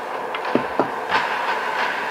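Steady rumbling noise inside a car, with a few light clicks about a second in.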